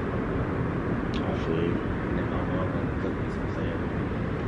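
Steady low outdoor background noise with no clear single source, and a faint voice briefly about a second in.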